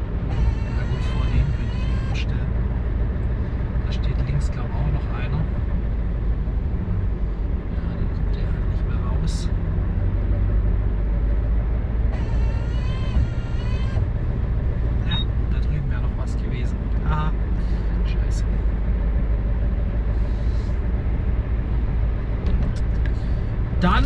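Heavy truck's diesel engine running at low speed, heard from inside the cab as a steady low rumble, with a few short clicks along the way.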